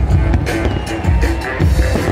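Music playing through a large fireworks display, with many rapid bangs and crackles from bursting shells.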